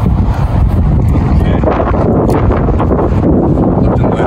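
Strong gusty wind buffeting the camera microphone, a loud, steady low rumble.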